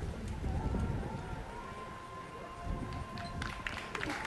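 A horse cantering on sand arena footing, its hoofbeats heard as dull low thuds, with faint voices in the background and a thin held tone through the second half.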